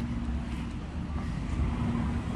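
Supermarket ambience: a steady low hum with a soft rustle of noise over it.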